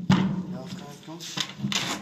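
A hammer blow on a chisel set into a heavy block, once just after the start. Then rough scraping as the block is shoved across a concrete floor.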